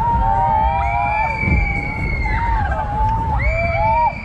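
Riders on a swinging fairground gondola ride screaming and whooping, several voices at once in long held cries rising and falling with the swings, over a steady low rumble of wind on the microphone.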